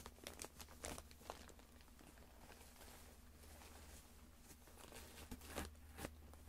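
Faint crinkling and rustling of plastic packaging being handled in a cardboard box, with a few short crackles in the first second and again near the end, quieter in between.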